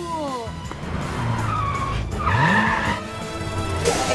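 Cartoon vehicle sound effects over background music: an engine rev rising in pitch together with a tyre skid, loudest about two and a half seconds in.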